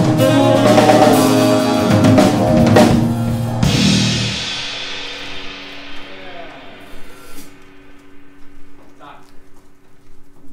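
Jazz quartet of saxophone, electric keyboard, drum kit and electric bass playing the last bars of a tune. It ends on a final hit about three and a half seconds in, and a cymbal rings out and fades over the next few seconds.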